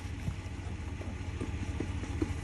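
Farm truck's engine idling, a steady low rumble.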